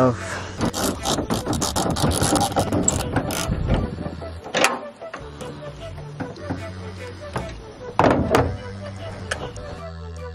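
Background music with steady low bass notes. Over it, in the first few seconds, comes a fast run of clicks from a socket ratchet loosening the tailgate cable bolt, and later a few single sharp clicks.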